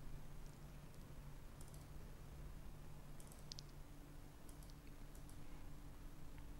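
Faint scattered clicks, a handful spread through the quiet, over a low steady hum. A faint steady tone comes in about four seconds in.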